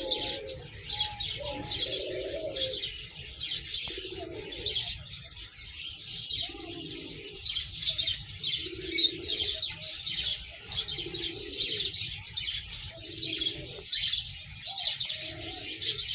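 Domestic pigeons cooing, a low coo repeated about every two seconds, over constant high-pitched chirping of small birds.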